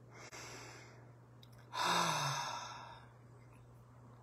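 A woman's deep breathing: a breath drawn in, then about two seconds in a long audible sigh out, with a faint trace of voice dropping in pitch as it fades.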